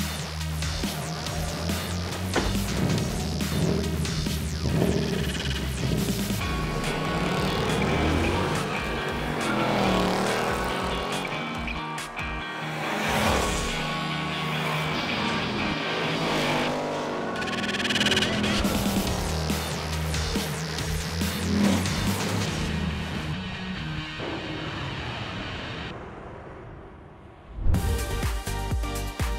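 Background music with a steady beat, mixed with Ford Mustang engines running hard during a drag race. An engine note rises and falls in pitch a few times around the middle.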